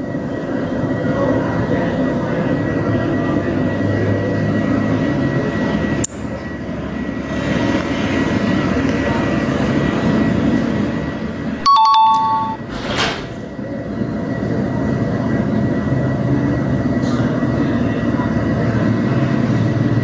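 Steady background rumble and hiss, with a short electronic beep of a few stacked tones about twelve seconds in.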